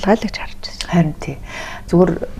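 Speech only: a woman talking in conversation, with short pauses between phrases.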